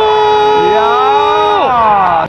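A football commentator's long, drawn-out shout celebrating a goal, held on one pitch and falling away near the end, with a second voice shouting over it partway through.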